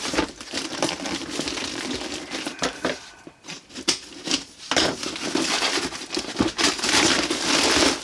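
Brown paper parcel wrapping being torn open and crumpled: paper crinkling and tearing. It goes quieter for a moment near the middle, then is loudest over the last three seconds.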